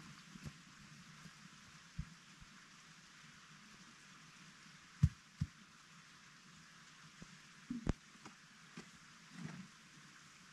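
Faint crunches and knocks from footsteps in deep snow and a snow shovel being picked up and set to the snow, over a low steady hiss; the sharpest are a pair of knocks about five seconds in and another pair just before eight seconds.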